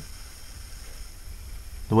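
Faint steady hiss of background room and recording noise with a low hum beneath it; a man starts speaking near the end.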